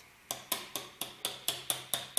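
Light, quick metal-on-metal taps, about four a second, of a small wrench used as a hammer on a thin metal blade wedged under the edge of a 3D print. Each tap has only a short swing of about two to three centimetres, driving the blade in to free the print from the build plate without breaking it.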